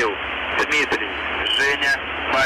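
A voice heard through heavy shortwave radio static, cut off above the midrange, reading out the station call sign MDZhB word by word in the Russian phonetic alphabet (Mikhail, Dmitri, Zhenya, Boris). About three separate words fall here.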